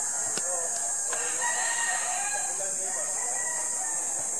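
A bird calling in long wavering notes, over a steady high-pitched hiss.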